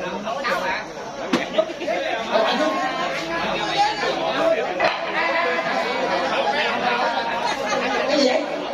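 Several people chattering at once, with one sharp knock about a second and a half in.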